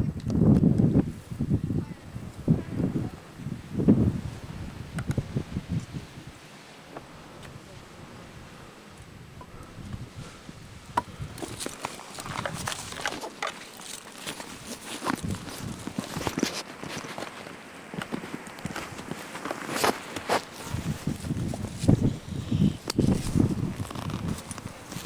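Footsteps on loose rock and dry twigs along a rough hillside trail, irregular scuffs and clicks from about halfway through, with muffled voices at the start and near the end.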